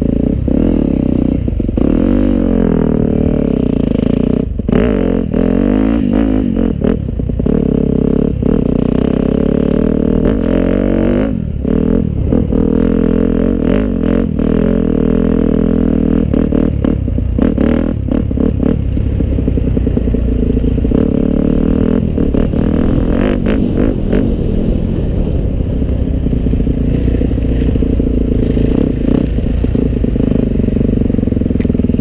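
Yamaha 250 dirt bike engine revving up and down as it is ridden over rough grass, heard close from the rider's helmet camera. Frequent clattering knocks come from the bike bouncing over the bumpy ground.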